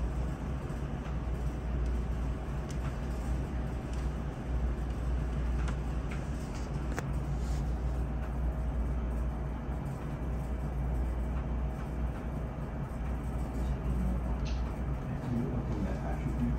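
Steady low hum of a quiet meeting room, with a few faint clicks scattered through it.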